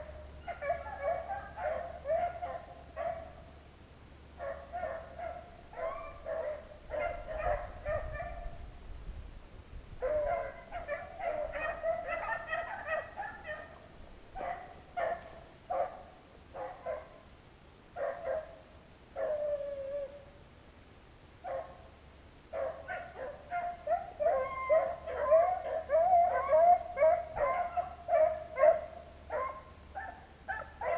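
Rabbit-hunting dogs baying on the trail of a rabbit: runs of repeated high bawling barks, sparse single calls in the middle, then a dense, louder run of baying in the second half.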